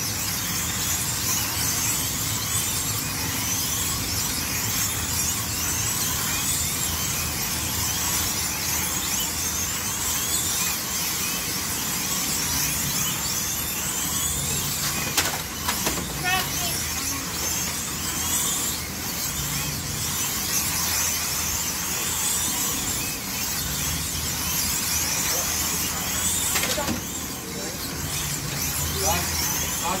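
Several slot cars racing on a large multi-lane track, their small electric motors whining high and rising and falling in pitch over and over as they accelerate and brake around the circuit. A sharp clack about fifteen seconds in.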